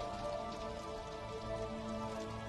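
Soft background music of sustained held chords under a steady hiss.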